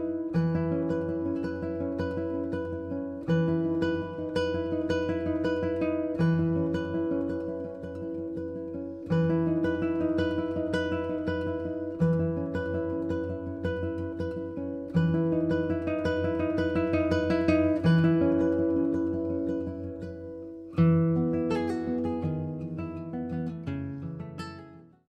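Solo acoustic guitar instrumental: a plucked melody over low bass notes struck about every three seconds.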